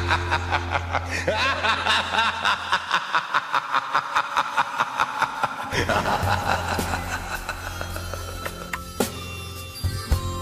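Electronic dance-remix music with a fast, even pulse. Its low bass note drops out about three seconds in and returns just before six seconds in.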